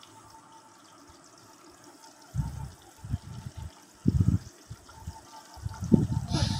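Mustard oil frying faintly in a kadai with bay leaves, dried red chillies and garlic. From about two seconds in come several low bumps as a wooden spoon works in the pan.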